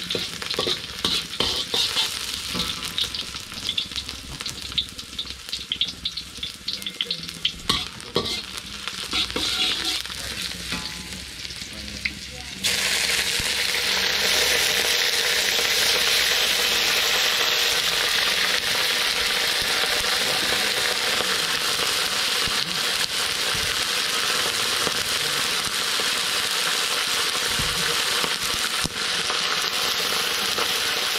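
Metal spatula scraping and tapping round a large iron wok as sliced onions fry in oil, with an uneven sizzle. About halfway through a much louder, steady sizzle starts suddenly as raw pork pieces fry in the hot wok.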